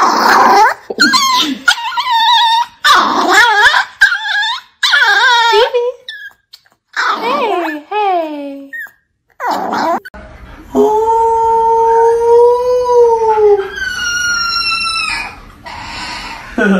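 A small white Chihuahua vocalising in a string of about a dozen short, wavering yowls, over about ten seconds. Then a husky puppy gives one long, steady howl and a shorter, higher one.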